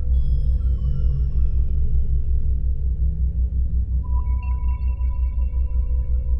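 Ambient electronic meditation music: a low drone pulsing about four or five times a second, with high electronic tones sliding downward at the start and a held mid tone coming in about four seconds in.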